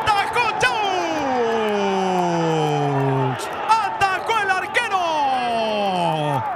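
A football commentator's long, drawn-out shout falling in pitch over about three seconds, then a second falling shout near the end, as he calls the goalkeeper's penalty save.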